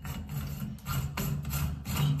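Threaded plastic head of a thermostatic shower valve being twisted by hand, giving a run of short rubbing, scraping strokes.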